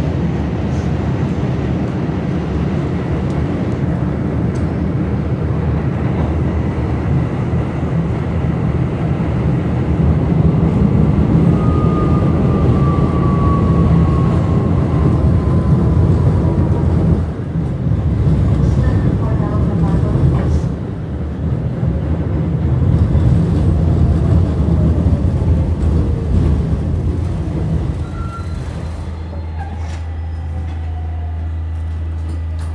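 New York City subway N train car running through a tunnel with a loud, steady rumble of wheels on rail. A high whine falls in pitch twice as the train slows, and it eases into a station near the end.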